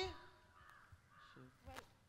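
Near silence, with a faint crow cawing in the background.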